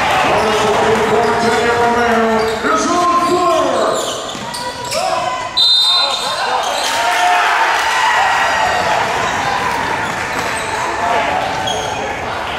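Basketball game sounds in a gymnasium: a ball dribbling and bouncing on a hardwood court amid shouting players and crowd voices, echoing in the hall. About halfway through a short, sharp referee's whistle blows.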